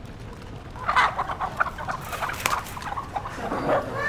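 Chickens clucking in a run of short calls, starting about a second in.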